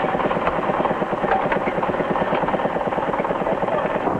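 Construction-site machinery running: an engine chugging steadily and rapidly.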